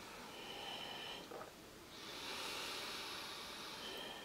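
Faint breathy hiss of air drawn in at a teacup, starting about two seconds in and lasting nearly two seconds.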